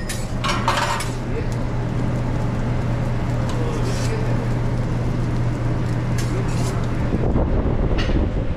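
A metal spatula clacks and scrapes on a flat-top griddle as French toast is turned, loudest in the first second with a few lighter knocks later. Underneath runs a steady low kitchen hum with a noisy wash of griddle cooking.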